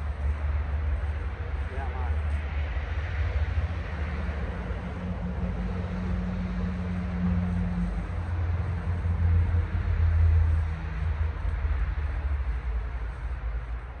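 Low rumble of passing road traffic, with a heavy vehicle's engine swelling and growing loudest about ten seconds in, then easing off.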